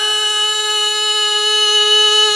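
A man's voice holding one long, steady high note in melodic Quran recitation (tilawah), sung into a microphone and amplified through a PA system.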